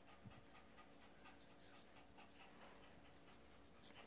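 Faint, irregular scratching of a marker pen writing a signature across a glossy photo print, close to silence.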